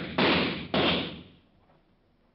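Gunshot sound effects in a radio drama: two more shots about half a second apart, each a sharp crack with a trailing decay, following one that rings on at the start.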